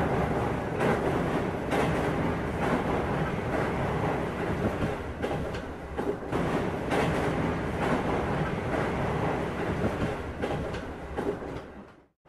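A train running on rails: a loud, steady rumble with repeated clattering. It cuts off abruptly at the end.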